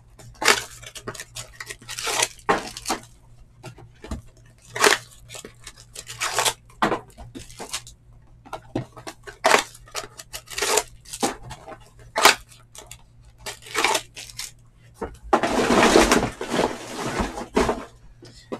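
Foil trading-card packs being handled on a table: irregular crinkles and taps, then a longer stretch of crinkling and tearing near the end.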